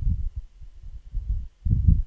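Low, irregular thuds and rumble with no voice, like handling noise on a body-worn microphone.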